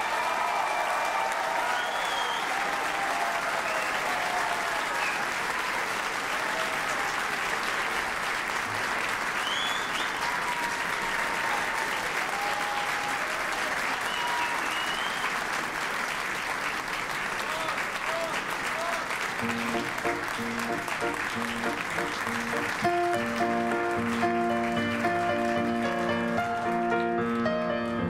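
A large audience applauding, with a few voices calling out, after a sung opera aria. About twenty seconds in, a piano begins playing steady held chords as the applause dies away.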